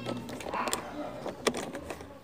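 Handling noise: a few light clicks and knocks of hands pushing the chime wiring into place behind the car's plastic trim.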